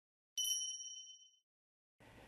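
A single bright ding, a small bell-like chime struck once about a third of a second in and ringing out to nothing within about a second, with silence on either side of it.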